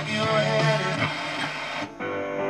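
Guitar music playing from a Schaub-Lorenz Touring T30 transistor radio's speaker. Near the end it drops out briefly as the dial is turned, and a duller-sounding station comes in.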